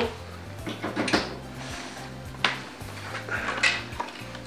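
Background music with a steady low line, over which there are three sharp clicks and light rattles from wires and a plastic connector being handled at a gate motor's control board.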